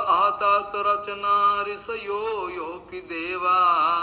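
A man's voice chanting a Sanskrit verse in a sung, melodic recitation, with long held notes and a wavering, ornamented pitch.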